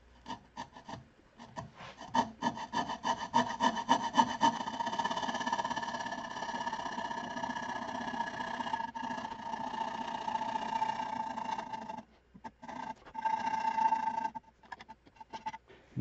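Coping saw cutting the curved yarn slot through the thin wall of a turned wooden bowl: quick back-and-forth strokes that run together into a steady buzz. It breaks off briefly near the end, then a few more strokes follow.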